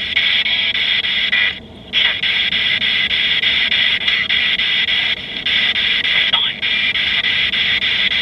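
Handheld spirit-box radio sweeping through stations: a steady hiss of radio static that keeps breaking up and drops out for a moment about a second and a half in.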